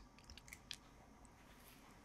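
Near silence: room tone, with a few brief faint clicks in the first second.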